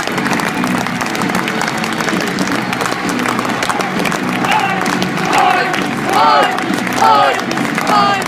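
Football stadium crowd clapping and cheering, with voices calling and chanting over it; two louder shouts stand out near the end.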